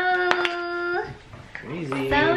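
A person's voice giving a long, held, sung-out 'ooh' of delight that glides up and then holds one pitch for about a second, with a sharp click about a third of a second in; a second wavering vocal sound starts near the end.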